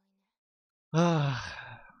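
A man's single long sigh, starting about a second in, breathy and voiced, falling in pitch as it fades: a sigh of disappointment.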